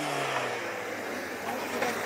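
A car engine hums and fades away in the first half second, leaving steady outdoor noise with faint voices.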